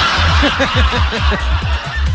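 Laughter: a quick run of short, falling 'ha's with breathy hiss, over background music with a steady low bass.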